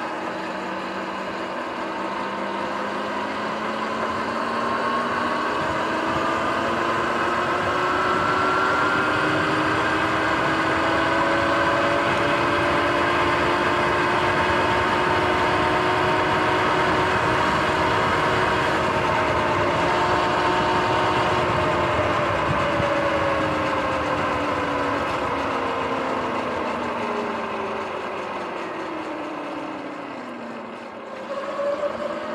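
Sur-Ron X electric dirt bike's motor and drivetrain whining under way on pavement, over wind and tyre noise. The whine rises in pitch over the first several seconds as the bike speeds up, holds steady, then falls away over the last several seconds as it slows down.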